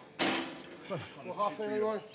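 A man's voice straining at the end of a heavy set: a sudden burst of breath just after the start, then a drawn-out vocal sound over the last second.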